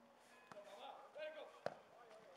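A football kicked hard once, a single sharp thud near the end, with players' faint shouts around it.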